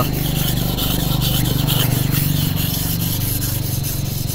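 A large steel knife blade ground back and forth by hand on a natural sharpening stone: a steady gritty rubbing, stroke after stroke, as the stone bites into the steel and wears it down.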